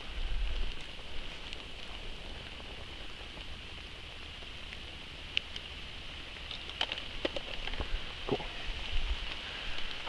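Light rain falling on forest leaves and the trail: a steady, even patter, with a few short clicks and rustles in the second half.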